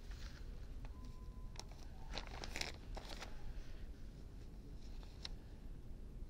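Faint rustling and a few light ticks as fingers shift a heat-transfer vinyl sheet on a fabric makeup bag to line it up.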